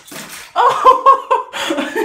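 A person laughing hard, several loud laughs one after another, with a short hiss in the first half second.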